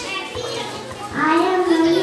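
Children's voices over background music, with held notes from about halfway in.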